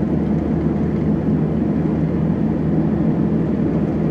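Camper van driving steadily, its engine and tyre noise a constant low drone heard from inside the cab.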